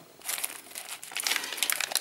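Foil snack packets crinkling irregularly as they are handled.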